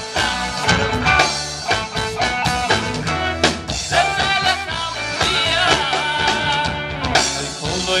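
A live band playing: a male vocalist singing a melody with wavering held notes into a microphone over electric guitar and a drum kit.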